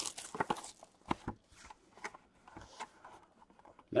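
Hands handling and opening a small cardboard trading-card box: light clicks and rustles of cardboard, most of them in the first second, thinning out after.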